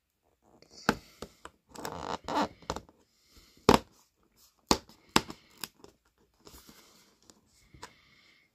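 Perforated cardboard door of an advent calendar being pushed and pried open by a fingertip: a scattered run of sharp cardboard clicks and pops, with bits of scraping and tearing between them.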